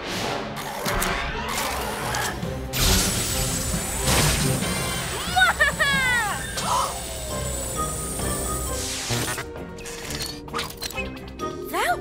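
Cartoon sci-fi ray-beam sound effect over background music: a hit about three seconds in starts a high, steady electronic hum with falling glides, which lasts about six seconds and cuts off. A brief burst of voice comes midway.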